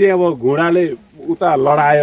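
A man speaking, with a short pause about a second in.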